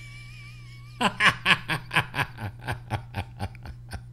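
A man laughing at a joke's punchline. About a second in comes a quick run of 'ha-ha' pulses, about five a second, that grow quieter toward the end.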